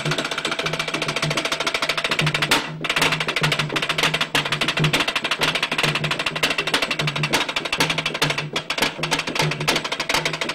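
Percussion ensemble of large frame drums played with round-headed mallets in a fast, dense, even rhythm over a steady low drum note, with a brief lull about two and a half seconds in.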